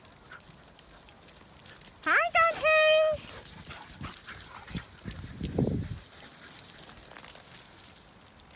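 Dog close to the microphone giving a few short high yips that rise in pitch, then one held whine. A brief low rumble follows, with faint scattered ticks.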